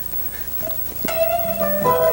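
Electric guitar played through an amplified rig: after a quiet first second, a note is struck and rings on, followed by a few more sustained notes near the end.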